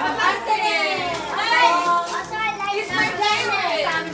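Children's voices, excited overlapping chatter and exclamations with no clear words.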